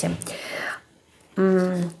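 A woman's voice only: a breathy whispered murmur, a short pause, then a drawn-out hesitation vowel held on one steady pitch.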